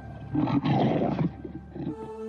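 A wild animal roaring, a single noisy roar that starts about a third of a second in, lasts about a second and then tails off.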